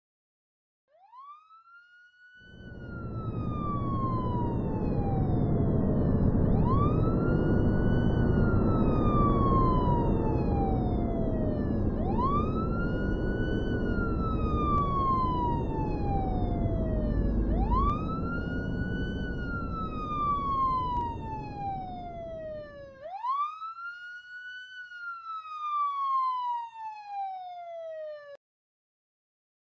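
A wailing siren, five cycles about five and a half seconds apart, each rising quickly in pitch and then falling slowly, over a loud low rumble that starts a couple of seconds in and cuts off suddenly near the end.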